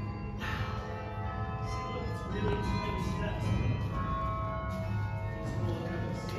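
Carillon bells being played in a tune, heard from inside the bell tower: a new note is struck about every second, and each rings on in long overlapping tones.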